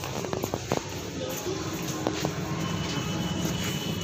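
Busy public-space background noise: indistinct distant voices over a steady hubbub, with a few quick clicks in the first second.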